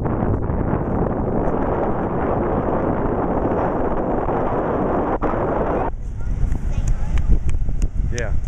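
Wind buffeting the microphone over ocean surf: a steady rushing noise with a heavy low rumble that drops away abruptly about six seconds in, leaving a lighter rumble and faint clicks.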